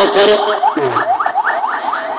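Electronic vehicle siren on a yelp setting: a fast run of rising whoops, about four a second, over a steady tone.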